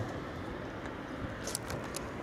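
Small boat moving across a lake: a steady low rumble, with a brief hiss about one and a half seconds in.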